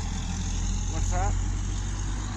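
Steady low rumble of a motor vehicle engine running nearby, with a short burst of a voice about a second in.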